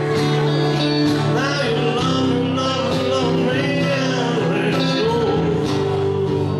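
Two acoustic guitars playing together live, picked and strummed, with a voice singing over them in a wavering, held line.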